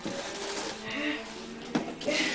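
Wrapping paper rustling and crinkling as a present is unwrapped by hand, with a sharp click near the end.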